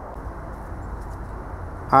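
Portable generator's Briggs & Stratton Vanguard engine running steadily, an even drone with no change in speed.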